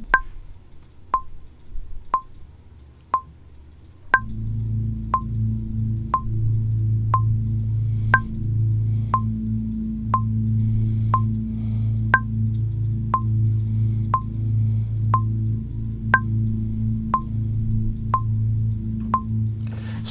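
A DAW metronome clicking once a second at 60 BPM, with a higher accented click on every fourth beat. After a one-bar count-in, a low sustained synth drone from Native Instruments Straylight comes in about four seconds in and holds under the clicks, pitched on A.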